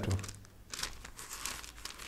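Thin Bible pages being leafed through by hand, a run of soft papery rustles and crinkles starting a little under a second in.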